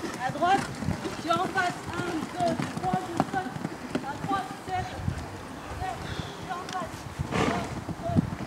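A guide's voice giving short, repeated calls to steer a blind show-jumping rider around the course.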